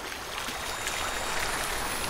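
Opening of an audio logo sting: an even hiss of noise that swells steadily louder, without voice or melody.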